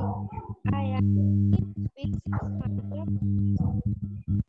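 Loud electrical interference buzz coming through a participant's microphone on a video call: a low, steady hum that keeps cutting in and out. Others on the call suspect a badly connected microphone plug.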